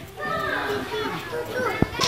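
Children's voices chattering and playing, with one sharp knock near the end.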